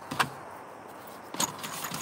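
Ammunition boxes being handled on a shelf: a sharp click just after the start, then a few more clicks and knocks about one and a half seconds in.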